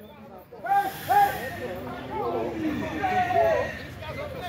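Several voices calling out over each other in short, rising-and-falling shouts, with a brief hiss about a second in.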